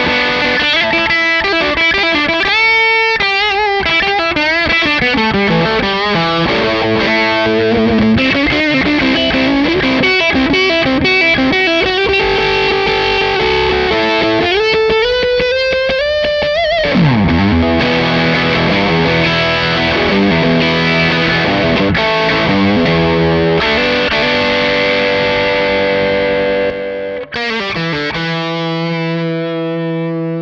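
Les Paul electric guitar played through the Crazy Tube Circuits Motherload's Big Muff-inspired fuzz circuit, with Link EQ on, the voice knob all the way up for extra midrange and the tone backed off. A sustained lead and riff passage, with a note bent or slid up and then back down around the middle, ending on a held chord that rings out.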